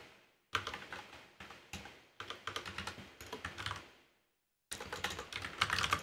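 Typing on a computer keyboard: quick runs of key clicks that stop for about half a second around four seconds in, then start again.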